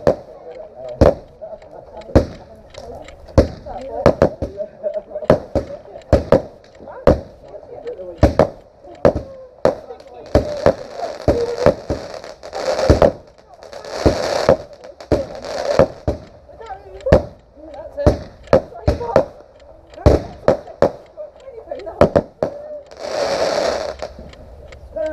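Ground-launched fireworks firing a long series of sharp bangs, about one or two a second. Hissing whooshes come through in stretches about ten and thirteen seconds in and again near the end.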